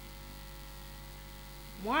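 A steady low electrical hum in the recording, with a woman's voice starting again just before the end.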